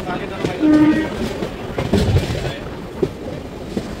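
Passenger express train running through a station at speed, with a rumble and wheels clacking over rail joints. A short train horn blast sounds under a second in.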